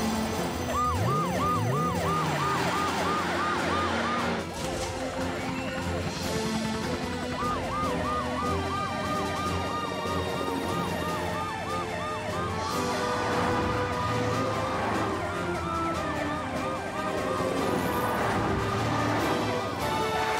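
Cartoon emergency sirens over upbeat background music: a fast warbling siren for the first few seconds and again around eight seconds in, then slower rising-and-falling wails that overlap one another.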